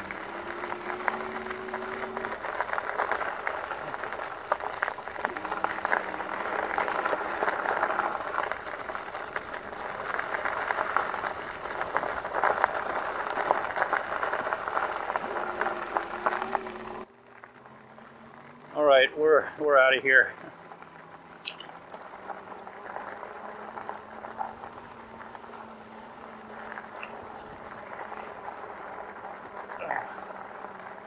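Rad Power Bikes RadMini e-bike climbing a dirt trail on low pedal assist: steady tyre and trail noise with a faint low hum from the hub motor. The noise drops away suddenly about halfway through, and a brief voice-like sound follows a couple of seconds later.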